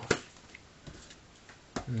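A sharp click just after the start, then a few faint ticks of handling noise; a man's voice murmurs at the very end.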